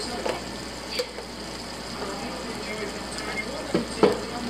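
Diced sausage, ham and peppers sizzling steadily in a frying pan on a gas stove, with one sharp click about a second in.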